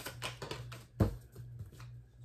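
Tarot cards being shuffled and handled: a quick run of small card clicks and flicks, with one soft thump about a second in.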